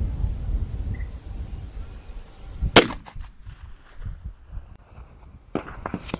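A single rifle shot from a 45-70 Government rifle fitted with a muzzle brake, one sharp crack about three seconds in.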